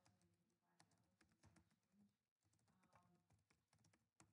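Near silence: faint, scattered light clicks of keys being tapped, with faint murmuring voices underneath.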